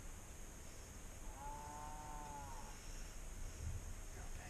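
One drawn-out animal call lasting about a second and a half, its pitch arching slightly up and then down.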